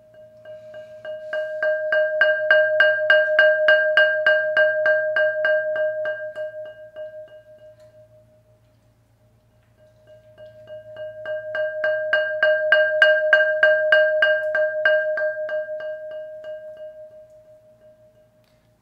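Glazed ceramic flowerpot rolled on with a yarn mallet: rapid strokes on one ringing note that swell louder and then fade to nothing, twice, with a short pause between the two swells.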